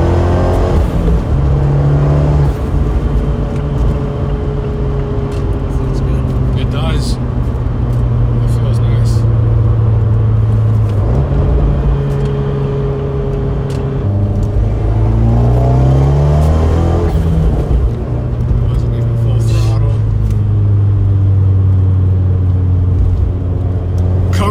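Fiat 124 Spider Abarth's 1.4-litre MultiAir turbocharged four-cylinder, fitted with a larger drop-in turbo running the old tune, heard from inside the car while driving. The engine note holds steady for stretches and twice rises in pitch as it pulls under acceleration, with a few brief sharp sounds along the way.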